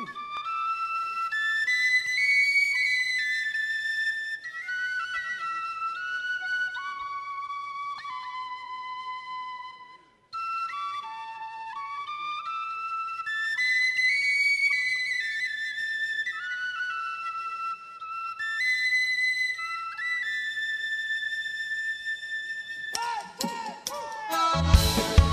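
Tin whistle playing a slow solo melody of held, high notes with no accompaniment, in two phrases with a short break about ten seconds in. Near the end the drum kit and the rest of the band come in.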